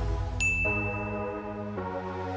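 A single bright 'ding' from a notification-bell sound effect, starting about half a second in and holding one high tone for over a second. It plays over electronic background music with sustained chords.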